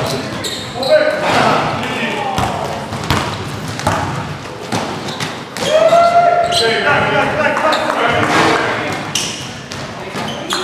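Live basketball game sound in a gym: the ball bouncing on the hardwood floor with scattered sharp knocks, and players calling out to each other, loudest a little past halfway.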